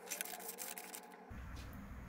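Faint light clicks and rustling from hands handling a small item on a work mat, then only faint room hum after a short change in the background about a second in.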